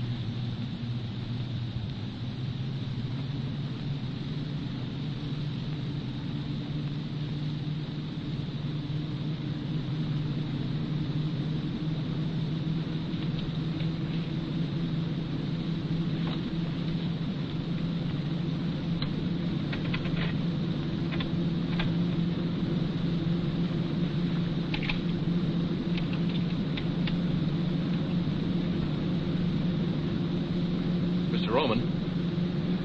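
Car engine running at speed, its hum rising slowly in pitch and loudness as the car keeps accelerating. A few short clicks are scattered through the second half.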